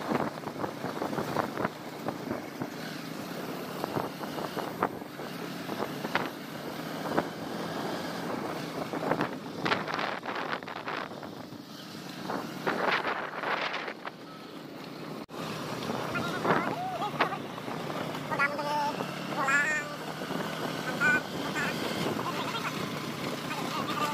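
Motorcycle engine running while riding along a rough dirt road, with wind buffeting the microphone. Voices and short, high, wavering calls come through in the last few seconds.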